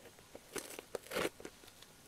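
Packaging being handled and opened by hand: irregular crinkling, crackling and tearing, in short bursts with the loudest just past a second in.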